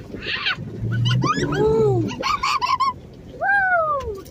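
Inside a Jeep cabin, people let out several drawn-out, wavering cries and squeals one after another, with a low engine hum coming up briefly about a second in.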